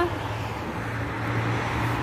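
Steady street traffic noise with a low steady hum underneath.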